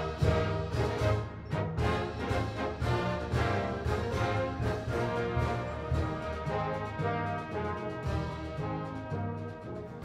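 A high-school wind band playing, with the brass to the fore over strong bass notes and regular accented attacks.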